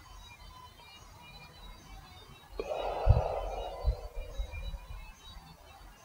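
A person breathing out hard for about two seconds, starting suddenly about two and a half seconds in and fading away, with a couple of soft thumps: the exhale after drawing on a cannabis pipe bowl.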